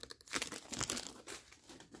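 Foil wrapper of a torn-open Topps baseball card pack crinkling as the cards are pulled out of it, a run of soft, irregular crackles.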